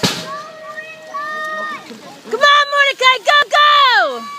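Spectators shouting and cheering for young BMX riders just out of the start gate. High, loud yelling voices fill the second half.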